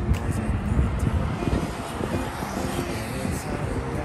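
Road traffic passing alongside, a steady low rumble of car engines and tyres, with soft background music underneath.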